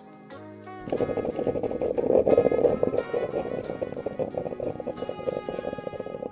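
A stovetop moka pot gurgling as the coffee comes through, a loud, rough, bubbling noise that starts about a second in, over background music with a steady ticking beat.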